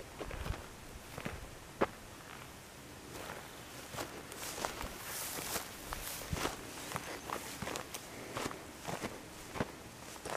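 Footsteps on a dry, stony dirt track and dry grass, single steps at an uneven pace, with one sharper click about two seconds in and a brief rustle midway.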